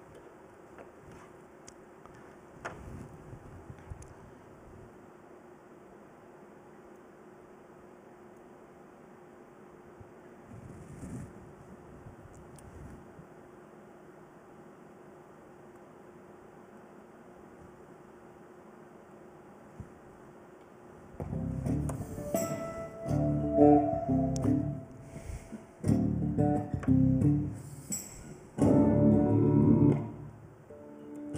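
A few faint clicks and handling noises for about twenty seconds, then recorded music played over a loudspeaker in several short stretches, with brief breaks. The music is sent through a resistor in line: the highs and lows stay intact and only the level drops.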